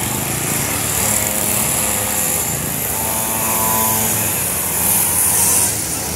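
Small engines of several mini dirt bikes running and revving as they ride past, a buzzing engine note over general outdoor noise. One engine's higher whine stands out for about a second around the middle.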